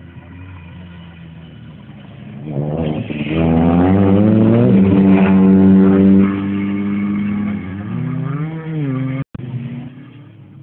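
Renault 5 rally car accelerating hard past, engine pitch climbing about two and a half seconds in and holding high and loud for a few seconds. The revs then drop and rise and fall again as the car pulls away. The sound cuts out for an instant near the end.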